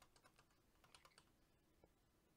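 Near silence with a run of faint scattered clicks from a computer in use.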